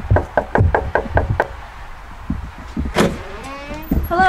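Knuckles knocking on a glass-panelled door: a quick run of about eight raps in the first second and a half. About three seconds in there is a louder bump as the door is opened.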